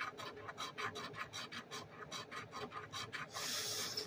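A scratch-off lottery ticket being scraped with a fingernail, in quick, even strokes of about six or seven a second. Near the end the strokes give way to a short, steady hiss.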